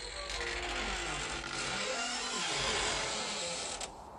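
Model train running close by on its track: a steady mechanical rattle of the wheels and gear drive, which cuts off abruptly just before the end.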